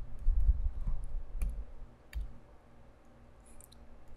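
Light clicks and low bumps of a stylus working on a pen tablet as an answer is written out, the two sharpest clicks coming near the middle, about a second and a half and two seconds in.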